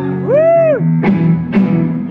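Live psychedelic jam rock on electric guitars and drums: over held chords, a lead note glides up and back down, and two sharp drum hits come about a second in and half a second later.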